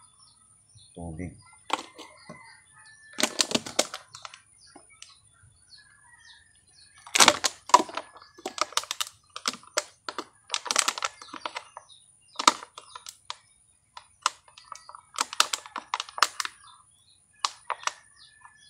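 Scissors cutting a thin clear plastic cup: irregular crackling and snipping of the brittle plastic, in loud clusters of clicks with gaps between.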